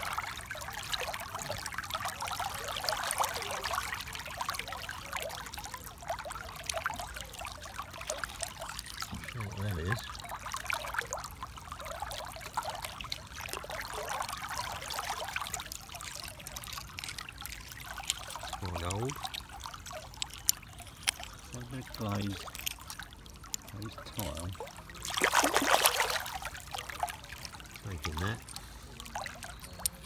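Shallow river water running and trickling around hands rummaging through the stream bed, with one louder splash near the end.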